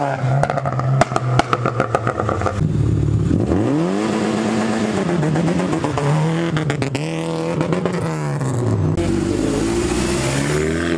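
Modified cars accelerating past one after another, engines revving. In the first two seconds or so a quick run of sharp pops sounds over a steady engine note. About four seconds in, another car's engine rises in pitch, holds while it passes, and drops away near the end.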